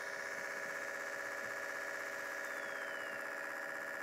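Steady low hum with several constant pitched tones and a faint high whine, from a laptop running idle at its boot menu.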